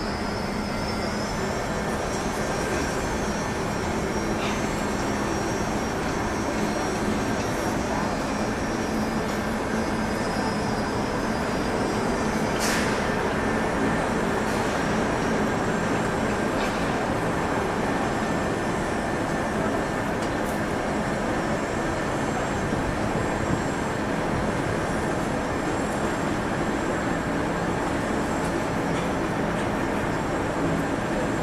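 Steady mechanical drone with a constant low hum and faint high whining tones, with one sharp click about halfway through.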